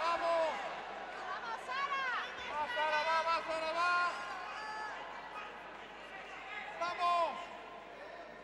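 People shouting encouragement in a sports hall: a run of high, arching calls in the first half, quieter for a while, then another call near the end.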